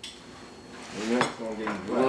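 Dishes and cutlery clinking: one sharp clink at the start and another about a second in.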